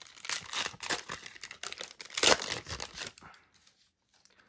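Foil trading-card pack wrapper being torn open and crinkled by hand: a run of sharp crackles, the loudest tear about two seconds in, stopping a little after three seconds.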